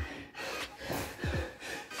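A man breathing hard in quick, gasping breaths, worn out deep into a set of 100 burpees. Two low thumps come a little past halfway.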